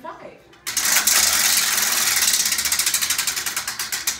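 Prize wheel spun by hand, clicking rapidly as its pegs strike the pointer at the top. The clicking starts about half a second in and slows gradually as the wheel loses speed.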